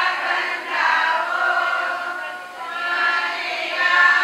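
A group of people singing together, holding long notes.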